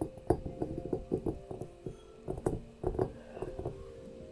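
Fingertips and nails tapping irregularly on a glass crystal ball, a few light taps a second, over soft background music.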